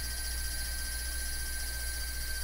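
Milling machine table power feed running steadily as it traverses the table and vise past the dial test indicator: a constant low hum with a faint thin high whine.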